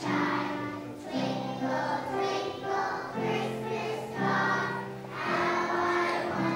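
A group of preschool children singing a song together with piano accompaniment, in held notes that change about once a second.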